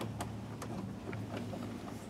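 Faint scattered clicks and ticks of screws being worked out of a motorhome's entry step cover, over a low steady hum.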